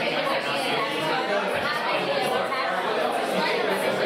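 Many people talking at once: overlapping conversations forming a steady hubbub of chatter.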